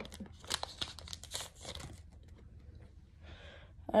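Foil Pokémon booster-pack wrapper crinkling and tearing as it is pulled open by hand: a run of sharp crackles over the first two seconds, then only faint rustling.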